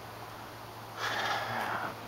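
A person's short breath, a rush of air lasting under a second that starts about a second in, over a faint steady low hum.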